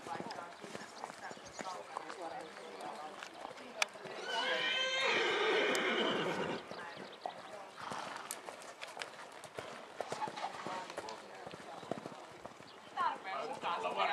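Hoofbeats of a cantering horse on a sand arena, with one loud, long whinny about four seconds in that lasts two to three seconds.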